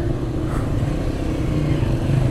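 Suzuki GS motorcycle engine running steadily at low revs as the bike creeps through slow, crowded street traffic.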